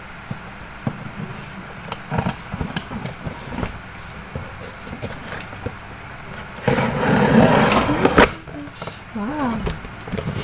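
A taped cardboard shipping box being opened with scissors and hands: scattered small clicks and taps, then a loud tearing noise lasting over a second about seven seconds in as the packing tape and flap are pulled open.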